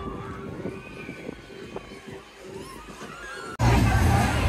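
Amusement-park ambience: ride machinery with a steady hum under scattered distant rising and falling shrieks and voices. About three and a half seconds in, it cuts to a much louder low rumble.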